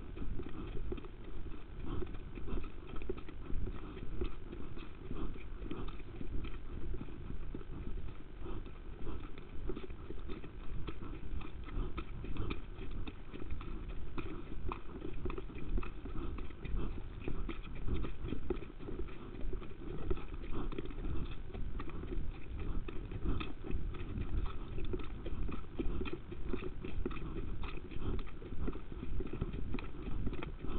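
A horse at exercise: a continuous, unbroken run of hoofbeats, most of the sound low and dull.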